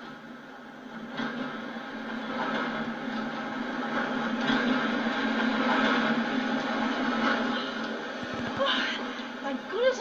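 A multiple-unit passenger train running into a station platform: a rumble and wheel noise that grows louder over a few seconds, then eases, heard through a television's speaker.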